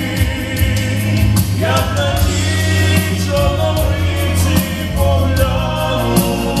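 Young man singing a ballad into a handheld microphone over an accompaniment with a steady bass and beat, his voice sliding up in pitch about a second and a half in.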